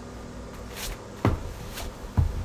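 A quiet room with a brief swish of fabric followed by one dull thud about a second and a quarter in: a person moving about and settling by a bed.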